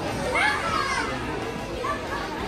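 Children's high voices calling out over the chatter of spectators in a sports hall during a judo bout.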